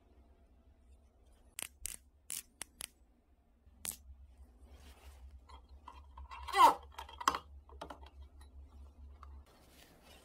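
Gloved hands handling a cut plastic bottle and a plastic cable tie: a run of sharp plastic clicks, then near the middle the loudest sound, a brief squeaking scrape as the tie is worked through the bottle, followed by another click.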